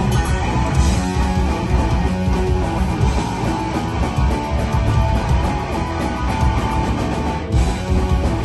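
Live punk rock band playing loud and fast: distorted electric guitars, electric bass and drums. The band drops out briefly a little before the end, then comes straight back in.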